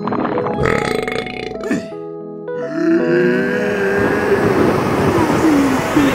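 Cartoon music of short stepped notes, then about halfway in a long, loud cartoon snore, a rushing breath whose pitch slowly sinks.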